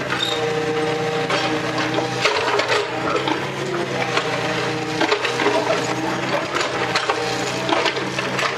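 Excavator engine running steadily under load, with crushed stone crunching and clattering as the bucket scrapes and spreads the gravel layer.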